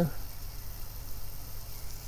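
Wind buffeting the microphone outdoors: a steady low rumble with a faint hiss.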